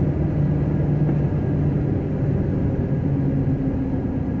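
Ford Ranger pickup heard from inside the cab while driving: a steady low engine drone over road noise, its note shifting slightly about three seconds in.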